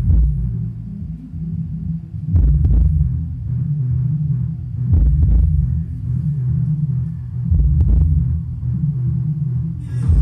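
Music reproduced through the subwoofer channel of a 5.1 home theatre amplifier: deep bass beats about every two and a half seconds, with little sound above the bass.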